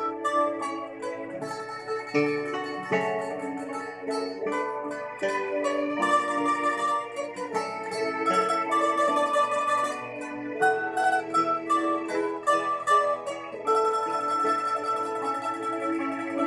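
Bandurria, the Filipino plucked lute with paired steel strings, playing a slow hymn melody with a pick.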